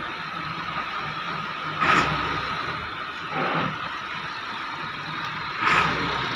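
Wheat thresher running, a steady mechanical hum with a thin high whine over it. A louder whoosh comes about two seconds in, a fainter one a second and a half later, and another near the end.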